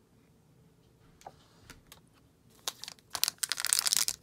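A stack of trading cards being handled and shuffled aside, with a foil card pack picked up. It is quiet for the first couple of seconds, then about two and a half seconds in comes a quick run of sharp clicks and rustling.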